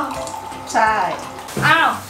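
Water poured from a plastic bottle into a glass, with voices and background music over it.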